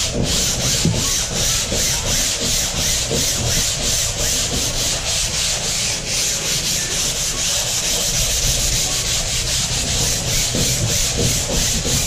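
Folded 220-grit sandpaper rubbed back and forth by hand over a gessoed canvas, about three to four strokes a second, knocking down the factory gesso texture to smooth the surface.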